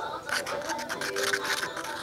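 A stick stirring and scraping a thick plaster putty and PVA glue paste in a plastic cup: a quick run of short scrapes, over background music.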